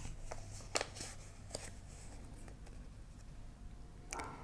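A small folded paper slip handled and opened out by hand: a few short, soft crackles of paper in the first second and a half.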